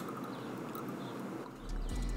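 Fizzing of freshly opened, shaken Topo Chico mineral water in a glass bottle, a steady crackling hiss of bubbles. She drinks from the bottle, with a swallowing sound near the end.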